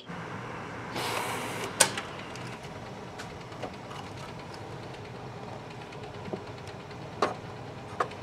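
Canon imagePROGRAF Pro-1000 photo printer running as it feeds and prints a card: a steady low whir, with a short hiss about a second in and a few sharp clicks.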